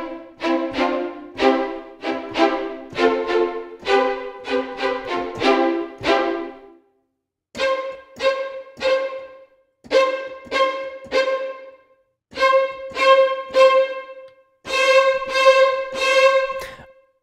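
Sampled first violins from the Cinematic Studio Strings library playing short detached notes in the staccato family (spiccato, staccatissimo, staccato and sforzando, switched by the mod wheel). Chords of short notes run for about seven seconds. After that a single note repeats in quick groups of two to four.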